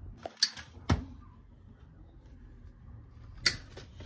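Three sharp clicks, about half a second in, at one second, and near the end, over faint low background noise.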